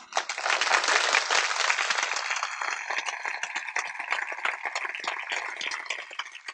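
Audience clapping and applauding. It starts suddenly, is loudest for the first couple of seconds, then gradually thins out.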